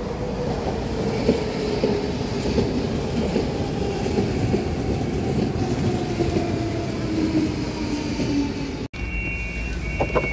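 DSB S-train electric multiple unit pulling in and braking: its motor tones slide down in pitch over the rumble, and its wheels click over the rail joints. After a brief break near the end comes a steady two-note electronic door signal tone.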